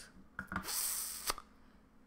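A short breath into a close microphone between spoken phrases: a hiss lasting under a second, with faint clicks at its start and a sharper click at its end.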